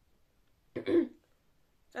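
A single short throat-clearing cough from a child, about a second in, from a slight cold.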